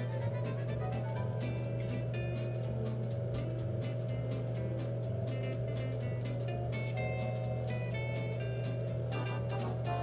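Background instrumental music with a steady low tone, a light melody and a quick ticking beat.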